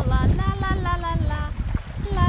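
A person's voice in a long, wordless, slowly falling cry, over wind buffeting the microphone and small waves washing on the rocks.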